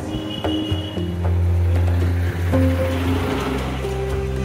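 Background music: sustained notes over a steady low drone, with a soft hiss swelling about three seconds in.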